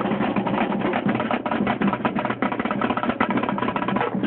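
Snare drum played with sticks in a fast, dense stream of strokes.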